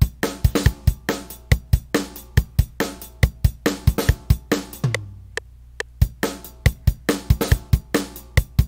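Programmed rock drum beat played back from sampled FPC HQ Rock Kit drums: kick and snare under steady closed hi-hat eighth notes at 140 BPM, evenly spaced sharp hits with no other instruments.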